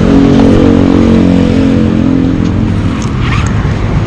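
A motor-vehicle engine running nearby in traffic, a steady hum that fades out a little over two seconds in. Near the end comes a brief scratchy zip.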